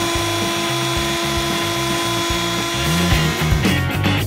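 Dirt Devil Ultra corded bagged handheld vacuum running at a steady pitch through its hose attachment, cutting off about three seconds in.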